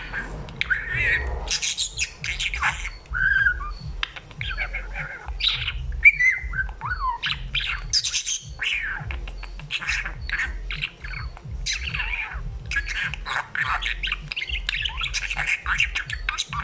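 A male budgerigar chattering and warbling without a break: a rapid jumble of chirps, squawks and short whistled glides.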